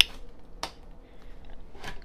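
A few faint, sharp clicks in a quiet pause. The last one, near the end, comes as a hand takes hold of a plastic blender jar.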